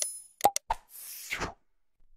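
Animated subscribe-button sound effects. A bell-like ding fades out, a few short mouse clicks come about half a second in, then a whoosh lasts about half a second and ends around a second and a half in.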